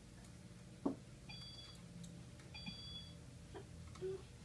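Children's toy laptop giving two electronic beeps about a second apart, each about half a second long with two high tones sounding together. A single sharp knock comes just before the first beep and is the loudest sound.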